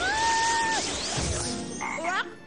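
Cartoon frog croaking: one long, steady, held croak, with short rising calls near the end.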